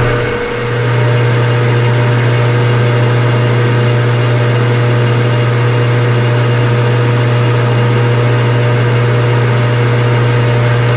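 Metal lathe running with a steady motor hum, dipping briefly about half a second in, while a cutting tool works a small round rod held in the spinning chuck.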